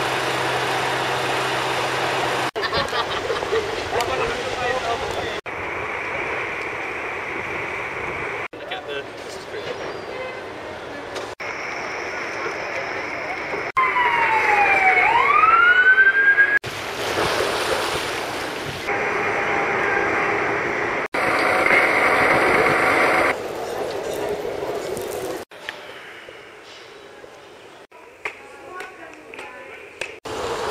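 Outdoor city ambience cut together from short clips, each a few seconds long, with background voices. About halfway through, a brief wail sweeps down in pitch and then up again.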